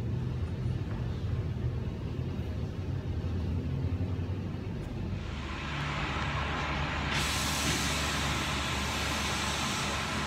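A steady low rumble with a constant hum, joined about five seconds in by a steady hiss that grows louder and brighter about two seconds later.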